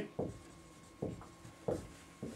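Dry-erase marker writing on a whiteboard: three short strokes.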